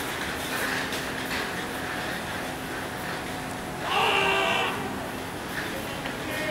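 Steady outdoor background noise, broken about four seconds in by a single drawn-out call from a person across the field, lasting under a second.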